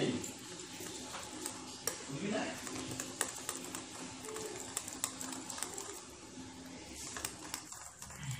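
A metal utensil beating thin batter in a ceramic bowl, with quick, irregular clicks of metal against the bowl's side.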